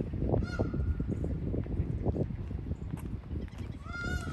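A large bird gives short, honking calls, one about half a second in and another near the end, over a steady low rumble.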